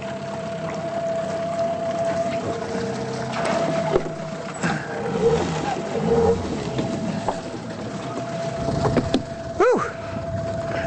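A boat motor running with a steady, even hum, with brief voices in the middle and near the end.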